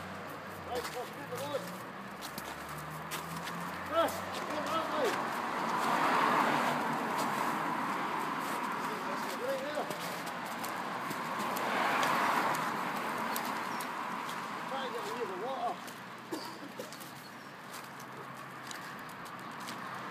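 Footsteps on a wet, slushy road with faint voices in the background. Twice a broad swell of noise rises and fades, about six and twelve seconds in.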